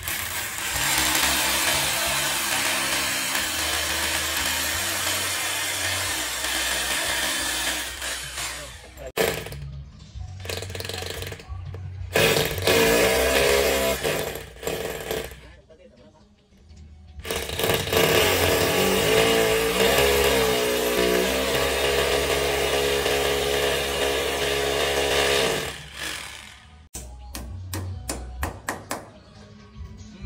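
Bosch corded rotary hammer drill boring into a masonry wall in several long runs, stopping and starting, its pitch wavering under load. Near the end, a quick series of hammer taps.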